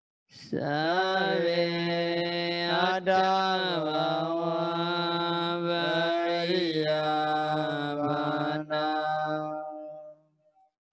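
A Buddhist monk chanting, one male voice drawing out long syllables at a nearly steady pitch, with slow vowel changes and only brief breaks for breath.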